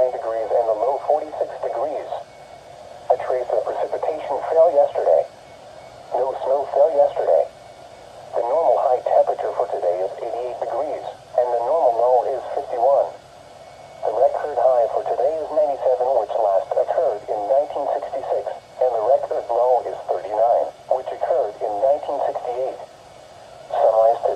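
Computer-voiced NOAA Weather Radio broadcast speech from a Midland weather radio's small speaker, read in short phrases with brief pauses between them, thin and narrow in tone.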